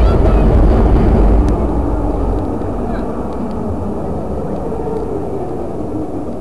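A combat robot's drive running as it spins and manoeuvres on the arena floor, a heavy low rumble that eases off about two and a half seconds in.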